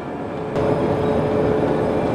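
Potato store conveyor running: a steady mechanical hum with one held tone, which gets louder about half a second in.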